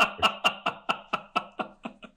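A man laughing heartily: a steady run of short 'ha' pulses, about five a second, fading away near the end.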